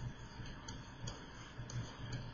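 Faint, irregular light ticks of a stylus tapping and moving on a pen tablet during handwriting, over a low hum.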